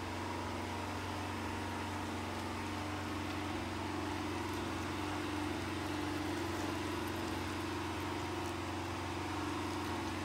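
Steady low machine hum that does not change, with no breaks or separate knocks.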